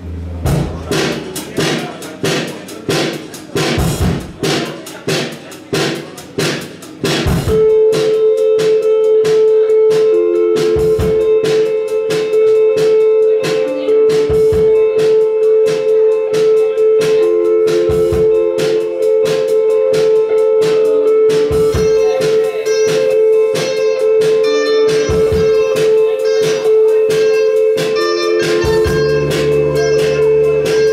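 A live rock band plays through the PA: electric guitar, keyboard, bass and drum kit. For the first seven seconds there are evenly spaced strikes, about two a second, then the full band comes in with a long held note over it.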